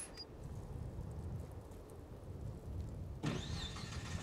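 Car engine starting and running with a low rumble, with a brief louder noise about three seconds in.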